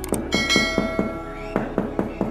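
A bright bell chime rings out about a third of a second in and slowly fades, the notification-bell sound effect of a subscribe-button animation. It plays over background music with a quick, steady beat.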